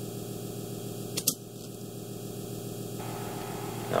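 Steady electrical hum with two quick clicks close together about a second in, the catches of a flat black case being opened.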